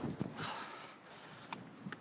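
A short breath close to a body-worn microphone, with a few faint clicks near the end.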